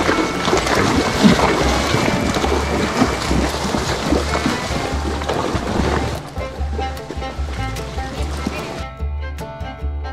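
Background country music with a steady low beat, over water splashing and rushing as a mule wades through a shallow creek. The splashing fades after about six seconds, and from about nine seconds the music, with plucked strings, stands alone.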